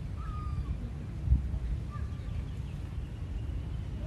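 Outdoor ambience with a steady low rumble on the microphone, two short faint animal calls, one near the start and one about two seconds in, and a single thump a little over a second in.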